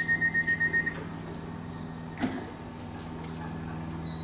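Electric multiple unit's door warning sounding: a quick run of about eight high beeps lasting just under a second, the signal that the doors are closing. After it, the standing train's steady electrical hum, with one click a little after two seconds in.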